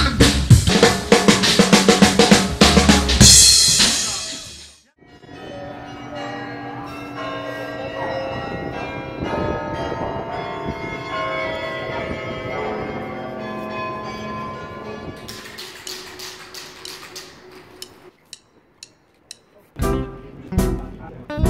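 Music: a fast drum-kit passage ending in a cymbal wash opens. After a short break, sustained pitched tones run for about ten seconds, then light ticking percussion that thins to sparse clicks near the end.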